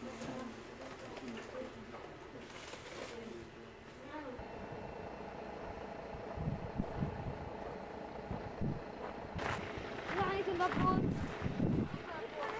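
Indistinct voices talking in the background, clearer near the end, over a faint steady hum.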